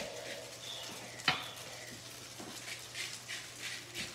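Faint sizzle of udon noodles frying in sesame oil in a hot pan, over a steady low hum from the range fan, with a single sharp click about a second in as salt and pepper are put on.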